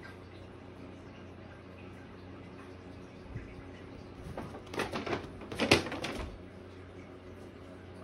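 A paper shopping bag rustling and crinkling in several loud bursts midway through, as a Maine Coon cat pounces on it and knocks it onto its side; a soft thump comes a second before. Faint steady room hum otherwise.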